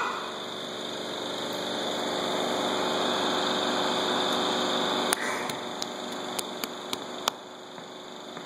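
A steady mechanical hum, then about seven sharp clicks spread over the last three seconds.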